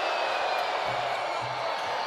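Basketball arena crowd noise: a steady, dense din of many voices in a large hall.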